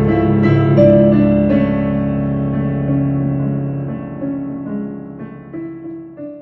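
Digital piano music: a melody of changing notes over held low notes, growing steadily quieter as it fades out toward the end.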